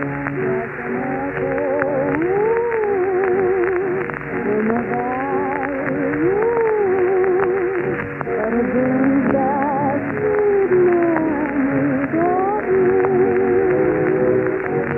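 Dance orchestra playing a slow melody over held chords, its lead line with a wide vibrato. The sound is narrow and muffled, as on an early-1930s radio broadcast recording.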